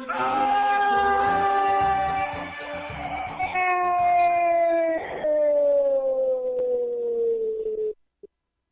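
A radio football commentator's long, drawn-out goal cry: one shouted vowel held for several seconds and slowly falling in pitch, with two brief breaks. It cuts off suddenly at the end.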